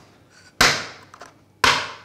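Ground espresso coffee tipped from a small metal grinder cup into a dosing funnel on a portafilter, with two sharp knocks about a second apart, each trailing off quickly.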